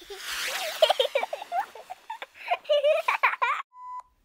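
A high-pitched, sped-up chipmunk-style voice squeaking and giggling, then a short steady 1 kHz test-tone beep near the end as the colour bars appear.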